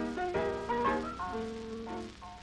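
Piano playing a quick run of notes and chords, loudest in the first second, recorded on a 1930s film soundtrack.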